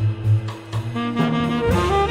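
Improvised jazz: a saxophone plays a line of held notes that step in pitch, over bass and light percussion.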